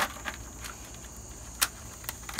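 Dry luffa gourd skin cracking and snapping as it is peeled off by hand, a few sharp snaps, the loudest about one and a half seconds in.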